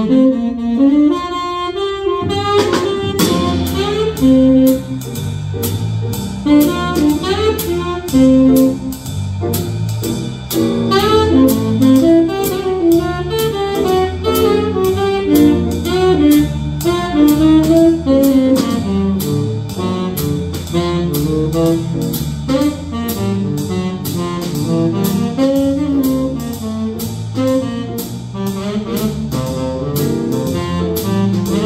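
Small jazz group playing: a saxophone carries a moving melodic line over electric bass and a swinging drum kit. After a sparser first couple of seconds, a steady cymbal beat sets in and keeps time for the rest.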